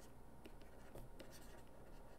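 Faint scratching and a few light taps of a stylus writing on a tablet screen, over near-silent room tone.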